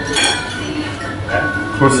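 Crockery, cutlery and glasses clinking in a busy café, with a brief burst of clinking just after the start; a man's voice starts speaking near the end.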